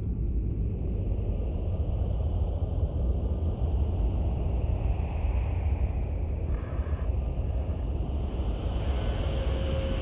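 Deep, steady rumble with a faint, airy high tone that drifts slowly in pitch above it: the ambient sound-effect bed of a post-apocalyptic intro.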